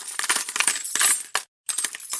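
Coins clinking and jingling in a rapid run of sharp metallic strikes, breaking off for a moment about one and a half seconds in.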